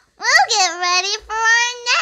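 A child's high voice singing wordless notes: a quick rise and fall early, then a long held note in the second half.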